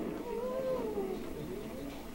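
A faint, high, drawn-out call that rises and then falls in pitch, lasting about a second.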